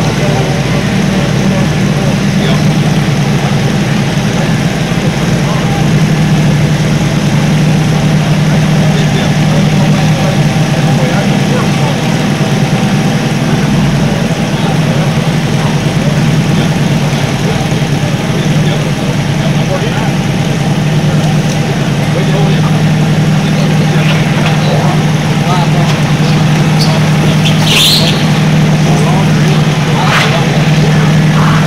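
An engine idling steadily, a low even drone, with a short sharp clatter near the end.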